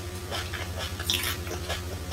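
Close-up chewing and mouth sounds of someone eating rice, with scattered small clicks and smacks.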